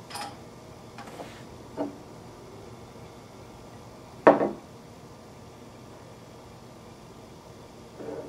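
Glass beer bottles and a pint glass handled on a wooden table: a few light taps, then one louder knock about four seconds in.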